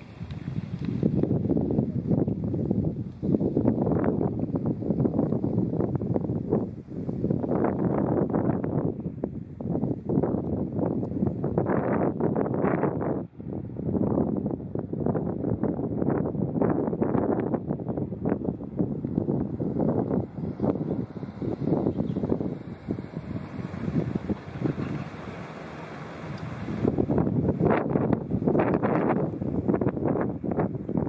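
Wind buffeting the microphone in gusts: a rumbling noise that swells and fades, dropping out briefly near the middle and easing for a few seconds later on.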